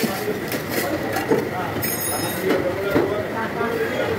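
Indistinct background voices over a steady, noisy din, with a faint constant high tone running through it.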